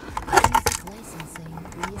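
A quick run of sharp plastic clicks and knocks from a car's centre console trim being handled and pried at its clips, followed by quieter handling noise.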